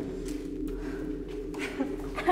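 A low, steady hum made of several held tones, with a faint click near the end.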